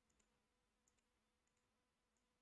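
Near silence, with a few very faint, isolated computer mouse clicks.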